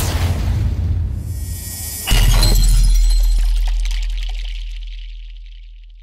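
Cinematic intro sound effect: a swelling whoosh and rumble, then about two seconds in a heavy bass hit with a glassy shattering sparkle, the deep boom fading away slowly.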